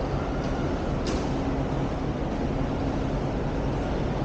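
Steady low rumble of city traffic with a faint engine hum, and a short hiss about a second in.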